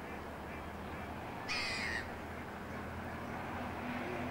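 A single harsh, rasping bird call, about half a second long, about one and a half seconds in, over a steady low background hum.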